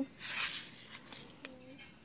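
Paper seed packet rustling as cabbage seeds are tipped out of it, a short rustle of about half a second, then a few faint small ticks.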